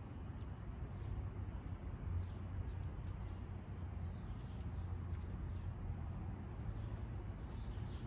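Faint, scattered bird chirps over a steady low outdoor rumble, with a few light clicks.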